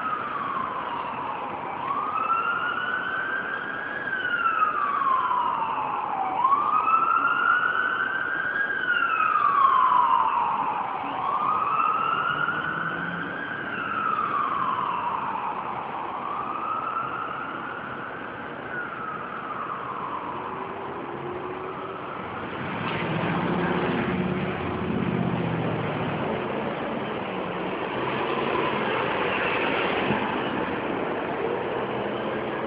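Emergency vehicle siren in a slow wail, sweeping up and down about every four to five seconds and fading away after about twenty seconds. Near the end a low vehicle engine rumble grows louder.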